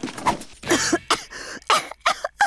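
A cartoon character's voiced coughing, a rapid run of short coughs, choking on a cloud of dust.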